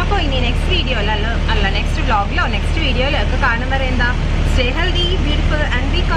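A woman talking over the steady low hum of a bus cabin.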